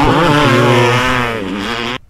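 Dirt-bike engine revving on the soundtrack of a motocross animation, its pitch rising and falling, cutting off suddenly at the end when playback is paused.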